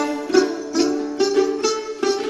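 Đàn tính, the Tày long-necked gourd lute, playing an instrumental passage of then music: a steady rhythm of plucked notes, about two or three a second.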